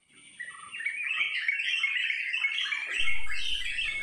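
Birds chirping in a busy chorus of many short, overlapping calls, with a thin steady high tone above them and a low rumble joining about three seconds in.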